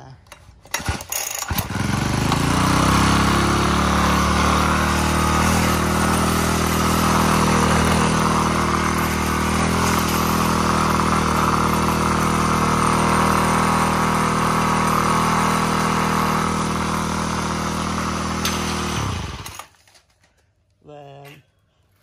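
The Makita (Dolmar) EH043 43 cc four-stroke brush cutter engine starts about a second and a half in, runs steadily and loudly for about eighteen seconds, then cuts off suddenly. It is a test run of an engine that has not yet been cleaned or adjusted.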